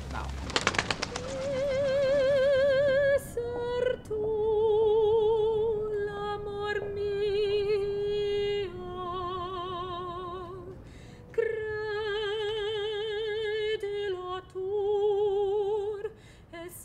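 Operatic singing by a high voice: long held notes with wide, even vibrato, stepping from pitch to pitch with short breaks between phrases. A quick run of clicks comes just before the first note.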